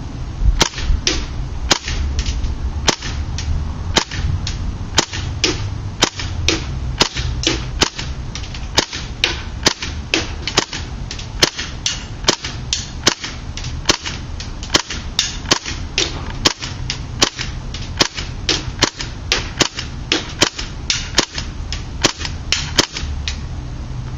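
KWA MP7 gas-blowback airsoft submachine gun running on propane and firing semi-automatic: a long string of sharp single shots, about two a second and unevenly spaced.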